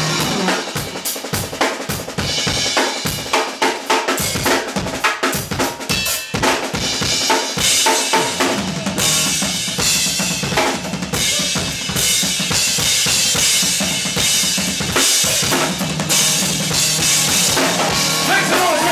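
Live drum kit played hard in a break: bass drum, snare and rimshots struck in quick succession, with cymbals. From about halfway the sound grows fuller and brighter with more cymbal as the rest of the band plays along.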